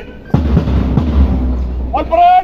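A drum beating a steady marching time: a few strikes with a deep low end.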